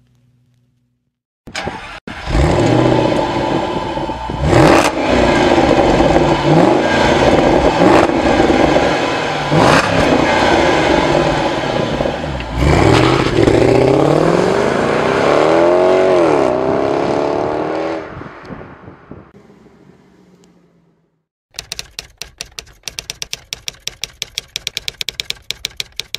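Car engine sound effect: starts up about a second and a half in, then revs and accelerates, its pitch rising and falling, and fades away. Near the end comes a fast, even run of sharp clicks lasting about five seconds.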